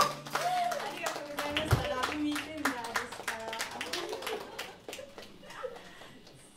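A small audience applauding as the band's last held chord dies away in the first moment, with voices calling out among the clapping. The applause thins out and grows quieter toward the end.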